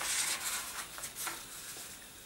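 A square sheet of paper rustling as it is folded in half and smoothed flat by hand, loudest in the first half second, then fainter rubbing and small crinkles.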